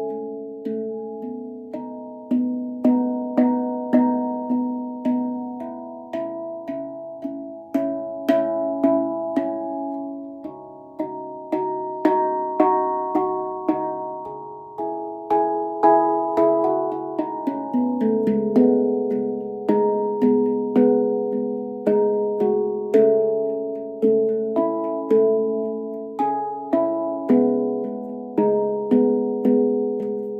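MASH stainless-steel handpan tuned to C# Annaziska 9, played with the hands: a steady stream of struck notes, each ringing on and overlapping the next, so several pitches sound together.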